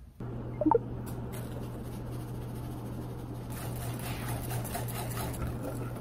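A wire whisk stirring thick batter in a glass bowl, a faint soft wet scraping over a steady low hum, with a brief squeak about a second in.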